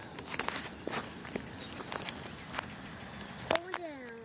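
Low, quiet background with a few faint, scattered clicks and ticks, then a man's short "oh, yeah" near the end.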